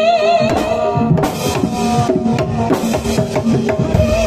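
Live Javanese gamelan-style ensemble music: hand drums and a drum kit strike a busy beat under a held melody line that wavers in pitch, with short pitched notes repeating underneath.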